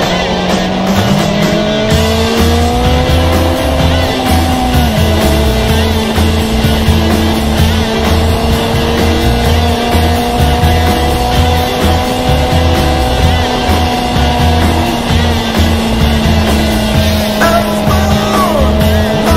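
Motorcycle engine running at a steady cruising speed over rushing wind and road noise, its pitch easing down about five seconds in and then holding steady.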